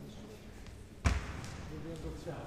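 A single sharp thud about a second in, echoing briefly in a large hall, over a murmur of voices.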